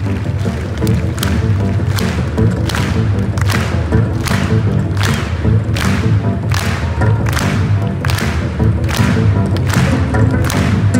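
Live amplified cello duo with a drum kit playing a rock arrangement, a heavy beat hitting about every three-quarters of a second, echoing in a large arena.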